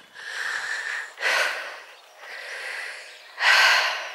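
A person breathing close to the microphone: four breaths about a second apart, the loudest near the end, with a faint whistle on the first.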